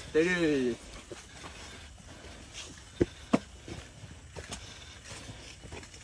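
Footsteps of people walking on a dirt trail strewn with dry leaves and bamboo litter, faint scattered crunches with two sharper clicks about three seconds in.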